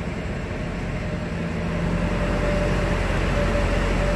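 2016 Ford F-350's 6.7-liter Power Stroke turbo-diesel V8 idling steadily, heard from inside the cab, just after a start.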